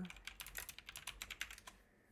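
Fast typing on a computer keyboard, a quick irregular run of key clicks that stops shortly before the end.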